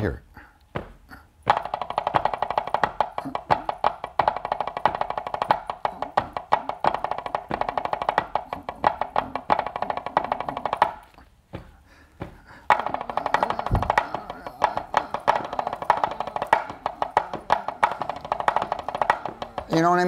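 Drumsticks tapping a fast, even sticking pattern on a practice surface, in two passages of roughly nine and seven seconds with a brief break between. The second passage is the same sticking displaced so that it starts on a different beat.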